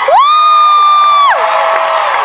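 A loud, high-pitched scream close by: it rises at the start, holds steady for about a second, then drops away. Behind it, a crowd is cheering.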